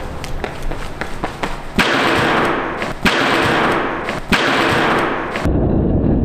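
Quick running footsteps on a hall floor during a sprint run-up to a vaulting box. Then three loud, sudden crashing thuds about a second and a quarter apart, each hanging on for about a second, before the sound turns muffled near the end.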